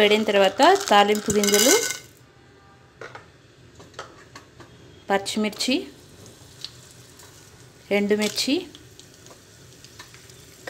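Tempering ingredients (chana dal, cumin, green and dried red chillies) dropped into hot oil in a nonstick frying pan. There are light clicks and a brief sizzle near the start, then a faint sizzle.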